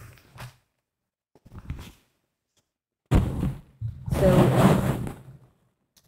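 Cotton quilt fabric rustling and sliding as a pieced quilt top is lifted, spread out and smoothed flat on a table. It starts with a brief faint rustle and is loudest in the second half.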